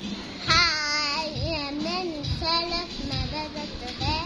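A young girl singing loudly in a high voice, starting with a long wavering note about half a second in, then several shorter phrases, over a steady low beat.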